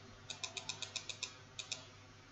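Computer mouse clicking: a quick, even run of about eight small clicks, then two more close together.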